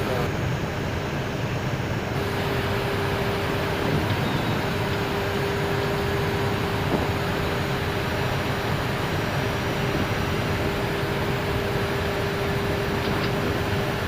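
Airbus A319 flight-deck noise in flight on approach: a steady rush of airflow and engine and air-conditioning noise, with a faint steady hum running through most of it.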